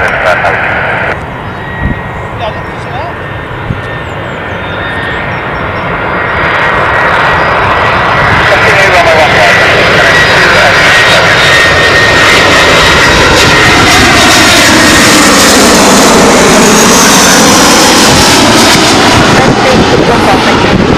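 easyJet Airbus A320-family jet airliner on final approach with gear down, passing low overhead. The engine noise grows steadily louder through the first half, with a steady high whine. Near the end a whooshing sound sweeps down in pitch and back up as the jet goes over.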